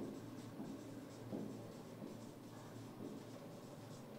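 Marker pen writing on a whiteboard: a run of faint short strokes, over a low steady hum.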